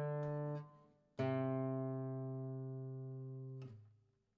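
Nylon-string classical guitar: a sounding note fades out, then a final note is plucked about a second in and rings for a couple of seconds before it is damped and stops abruptly near the end.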